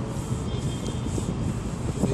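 Wind buffeting the microphone in an uneven low rumble, over the hum of distant city traffic.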